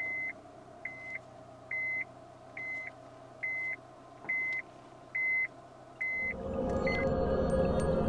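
Electronic warning beeps, nine short identical beeps a little faster than one a second over a faint steady hum, stopping near the end as a low rumbling swell of ambient music rises.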